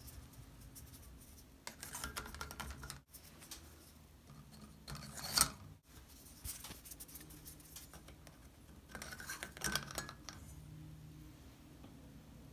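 Plastic candle sleeves being pushed onto a chandelier's candle sockets: faint scraping and clicking of plastic on the fittings in three short spells, the loudest about five seconds in.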